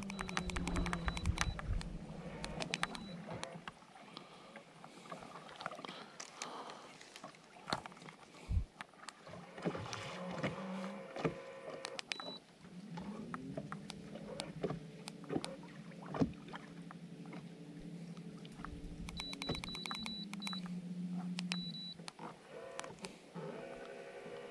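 Minn Kota i-Pilot electric trolling motor running with a low hum, its pitch rising about halfway through and falling again near the end as the speed is changed. Clicks from the remote's buttons with short high beeps, mostly near the start and again later, and a few knocks on the kayak.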